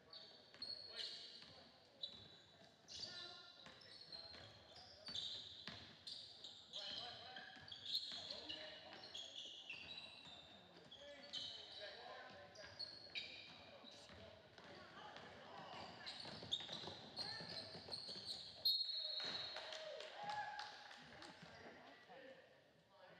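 Basketball game on a hardwood gym court: sneakers squeaking over and over, the ball bouncing, and players' and spectators' voices. A short whistle blast comes near the end, just before play stops for a free throw.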